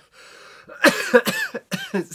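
A man coughing hard in a quick run of several coughs, beginning just under a second in after a short breathy hiss. The cough is from dust off an old plush toy getting into his throat.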